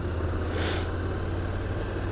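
Honda NC750X's parallel-twin engine running at low speed in traffic, a steady low rumble mixed with road noise, with a brief soft hiss about half a second in.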